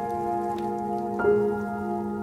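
Slow, soft instrumental piano music: sustained chords ringing, with a new chord struck about a second in.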